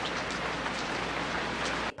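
Steady rain, an even hiss of falling rain with no distinct drops standing out, that cuts off abruptly just before the end.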